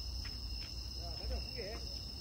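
Crickets trilling steadily in a high, even tone over a low rumble, with two faint ticks in the first second.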